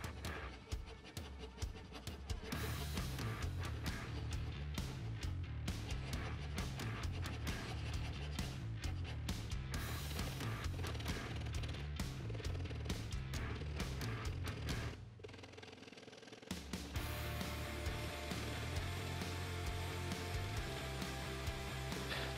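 Background music with a steady bass beat, over short, rapid scraping strokes of a checkering file cutting grooves into a vegetable ivory (tagua nut) guitar pick. The music drops out briefly about fifteen seconds in.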